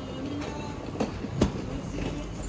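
Two sharp metallic clanks from a box truck's steel hydraulic tail-lift platform, about a second in and again a moment later, the second louder, over a low steady rumble.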